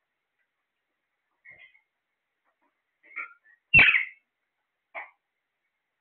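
Caged parakeets giving four short squawks. The loudest is about four seconds in.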